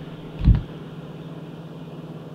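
A steady low hum of room tone, broken about half a second in by one short, low thump.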